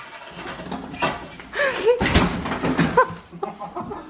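A curtain rail being wrenched off the wall by hand, the curtain fabric rustling, with one loud bang about two seconds in. Brief laughter in between.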